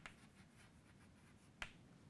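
Chalk on a blackboard: a faint tap at the start and one short, sharp click about one and a half seconds in, otherwise near silence.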